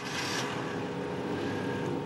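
Car engine running just after being started, rising in loudness in the first moment and then running steadily.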